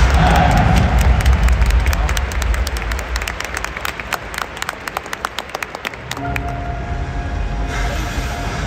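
Stadium public-address sound for the big-screen intro video, echoing through the stadium: a low rumble, then a quick, uneven run of sharp clicks, and music with steady tones starting about six seconds in.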